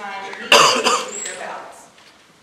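A person coughing once, loud and sudden, about half a second in, with quiet voices in the room around it.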